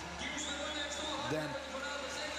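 A man's sports commentary, a single word about a second in, over a steady background of arena noise and low hum.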